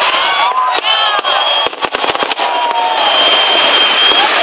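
Aerial fireworks going off in rapid, irregular bangs and crackles, with a crowd shouting and cheering over them. A high, steady whistle sounds near the end.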